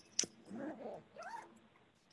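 A sharp click, then two short pitched vocal sounds that rise and fall in pitch.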